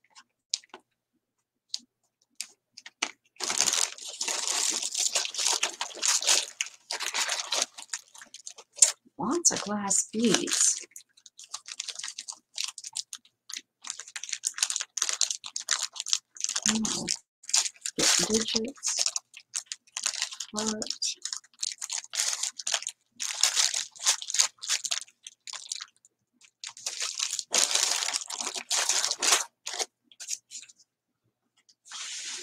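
Clear plastic bags of small craft embellishments crinkling as they are handled and rummaged through, in irregular bursts with short pauses.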